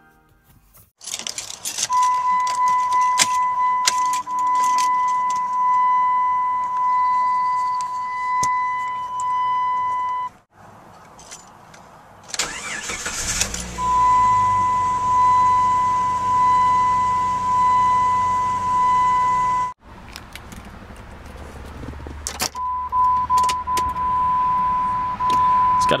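Warning chime of a 1992–1998 Jeep Grand Cherokee: one steady electronic ding repeating about once a second, with the clicks and jingle of a key in the ignition. About halfway through, the engine cranks and starts, then idles under the continuing chime.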